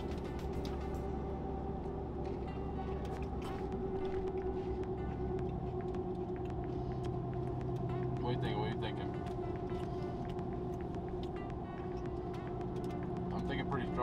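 Steady drone of a pickup truck driving on the road, heard inside the cab, with small crisp crunches from a hard pretzel snack being chewed.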